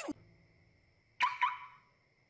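Two short, sharp cartoon sound effects about a second in, a fifth of a second apart, each ringing briefly as a tone before fading.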